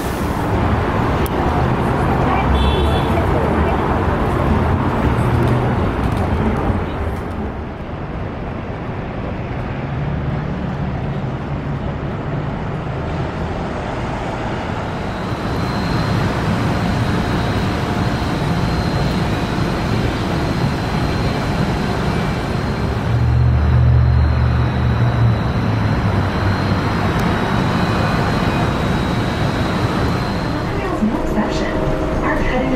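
Ride noise of an electric monorail train: a continuous rumble with a thin steady high whine that comes in about halfway, under indistinct voices.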